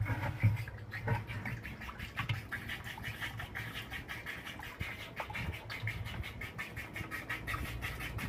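Water running in through a newly fitted float valve and splashing into the water tank, with a fast, even crackle of sputtering several times a second.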